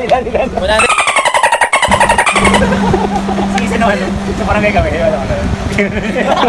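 A buzzing engine starts about a second in and runs for under two seconds, its pitch falling, then gives way to a steady low hum.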